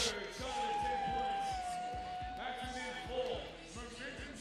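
Arena sound at a basketball game: a basketball bouncing on the court under one long held note lasting about two seconds, with faint music behind.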